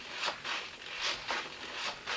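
A few short, faint rasping sounds, about five in two seconds, from the elevator stick of a radio-control transmitter being worked and the model jet's thrust-vectoring nozzle servos moving.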